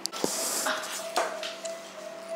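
Dishes and cutlery clinking on a table: two sharp knocks about a second apart, with a short hiss near the start. Background music holds a steady note underneath.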